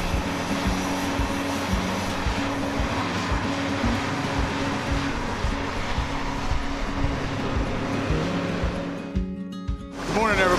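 Background music with a steady beat and a dense, noisy texture, fading out near the end.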